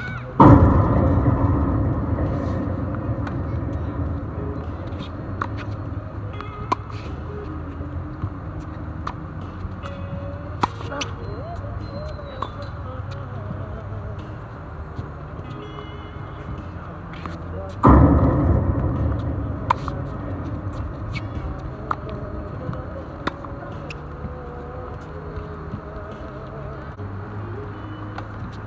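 Sharp pops of tennis balls struck by rackets and bouncing on a hard court, every second or two, over a song with singing. A loud rush comes in suddenly at the start and again about two-thirds of the way through, each fading over a few seconds.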